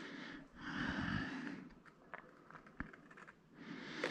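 Faint handling of a small cardboard box as its sleeve is worked off by hand: a soft scraping hiss, a few small taps, then more rubbing near the end.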